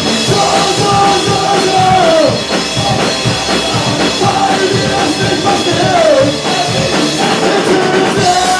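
Rock band playing at full volume: electric guitars, drum kit and a male voice singing, with sung phrases falling in pitch twice.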